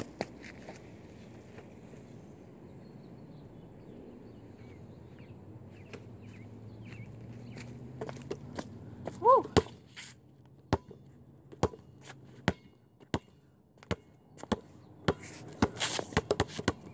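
Basketball bouncing on a concrete sidewalk: single bounces under a second apart in the second half, coming faster near the end. A short voiced sound about nine seconds in.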